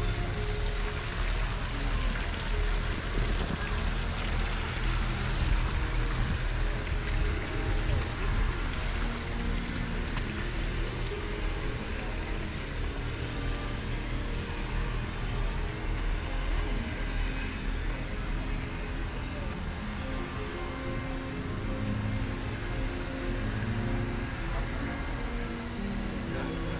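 Wind rumbling on a phone microphone outdoors, steady throughout, with faint music of short held notes and scattered distant voices beneath it.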